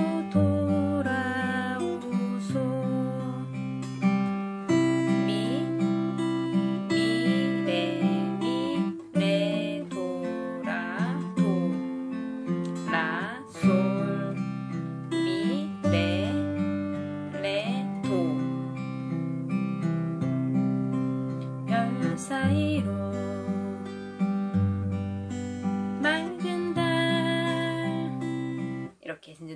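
Acoustic guitar played fingerstyle in a 6/8 waltz arpeggio, a bass note on each beat under a picked melody line, with a few notes slid into. It is the song's intro figure played as the interlude.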